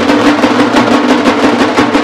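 A vajantri street band of many large stick-beaten drums playing a fast, dense rhythm. A steady, wavering pitched line runs under the strokes.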